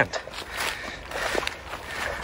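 Footsteps walking over dry leaf litter and brush, a few irregular, faint steps.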